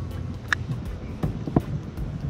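A small castable fishing camera being handled in the fingers: a few faint short clicks over a steady low background rumble.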